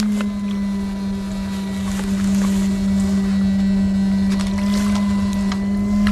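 Electrofishing inverter humming at one steady, unchanging pitch, over a low rumble.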